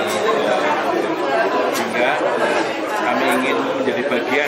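A man speaking, with the chatter of other people around him.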